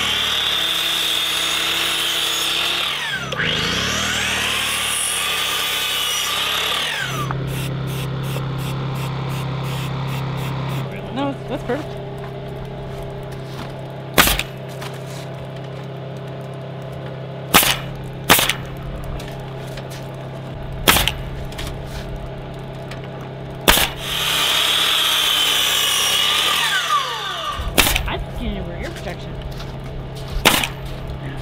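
Sliding compound miter saw cutting engineered-wood lap siding: two long cuts at the start and another about 24 s in, the blade whine rising and falling. In between, a pneumatic coil siding nailer fires single nails into the boards, about seven sharp shots a few seconds apart, over a steady low hum.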